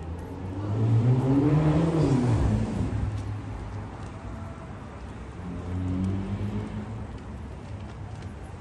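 A car drives past close by on the street, its engine pitch rising as it approaches and dropping as it passes about two seconds in. A second vehicle passes more softly about six seconds in.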